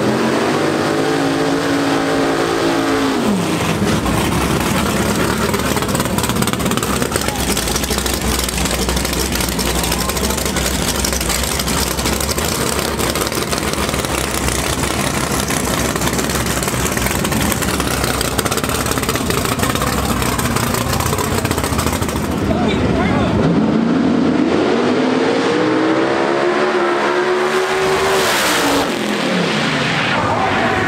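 Drag race cars' engines running loud at the starting line, with a rev that rises and falls in the first few seconds. From about two-thirds of the way in, a car launches and accelerates hard down the strip, its pitch climbing in steps and then falling away as it pulls off.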